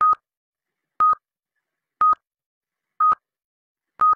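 Countdown-timer sound effect for an on-screen stopwatch: a short, clicky beep once a second, every beep at the same pitch.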